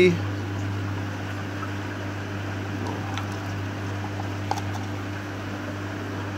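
Steady low mechanical hum, like a small fan or motor running, with a couple of faint ticks near the middle.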